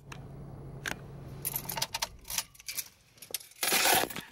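A bunch of car keys jangling and clicking at the ignition, with a low steady hum that stops a little under two seconds in. Then scattered rattles and handling noise, and a louder rustle just before the end.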